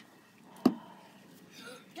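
A single sharp knock about two-thirds of a second in, over a low background, with a faint voice starting near the end.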